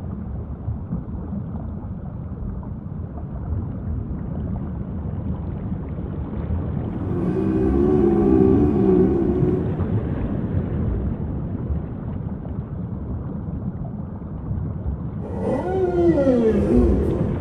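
Whale calls over a steady low rumble: a wavering, moaning call lasting about two seconds midway through, and a call that falls in pitch near the end.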